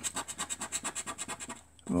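A coin scraping the scratch-off coating of a paper scratchcard in quick back-and-forth strokes, about a dozen a second, stopping about three-quarters of the way through.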